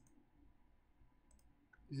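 A few faint computer-mouse clicks in near silence.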